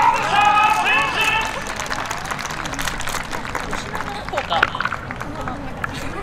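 An announcer's voice over a handheld loudspeaker finishes an introduction in the first second and a half. After that there is quieter outdoor crowd noise with scattered voices.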